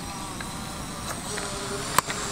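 Quadcopter drone's propellers buzzing steadily, with a sharp click near the end.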